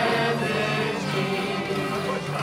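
Live Basque folk dance music led by a fiddle, with voices singing along.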